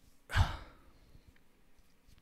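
A man's sigh: one short breathy exhale straight into a close handheld microphone, less than half a second long, about a third of a second in.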